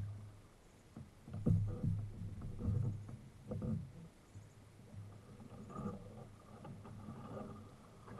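Canoe paddling: a wooden paddle dipping and pulling through the water and water sloshing against the hull, heard close to the waterline. The strokes come about once a second early on, then the sound settles into a softer, steadier wash.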